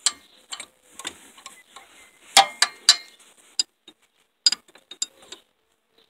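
A metal wrench clicking and clinking against the rusty nuts and bolts of an electric golf cart motor as they are worked loose, in an irregular run of sharp knocks, the loudest a little over two seconds in.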